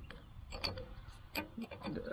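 A few light, scattered metallic clicks and ticks from an open-end wrench being worked on a grease zerk on a PTO drive-shaft yoke.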